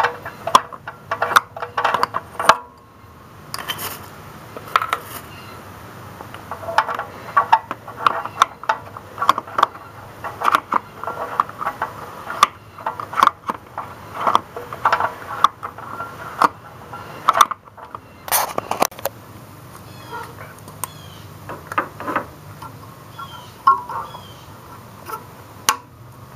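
Irregular light clicks and metal taps as an upstream oxygen sensor is turned by hand in the exhaust manifold's threaded port and its wire and plug connector are handled.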